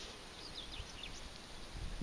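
Quiet outdoor background with a few faint, short bird chirps between about half a second and a second in, and a low rumble near the end.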